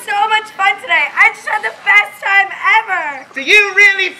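A high-pitched voice speaking.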